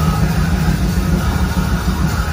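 Live progressive metal band's amplified music: a steady, heavy low drone with no drum beat.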